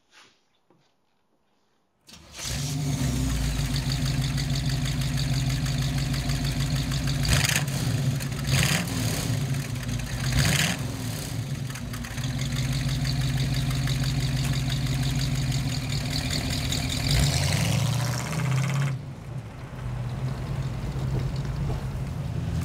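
A 350 crate small-block V8 with headers comes in suddenly about two seconds in and runs with a deep, steady note. It is blipped louder a few times in the middle, then drops quieter near the end.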